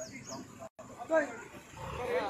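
Men's raised voices shouting over a low rumble, the loudest cry a little past the middle, with a brief total cut-out in the sound just before it.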